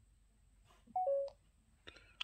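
Samsung Galaxy S22 Ultra camera app's stop-recording chime: a short two-note beep, the first note higher and the second lower, about a second in, as the video recording is stopped.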